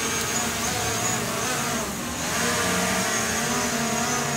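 Small quadcopter drone's propellers buzzing steadily as it hovers, the pitch wavering slightly as the motors adjust.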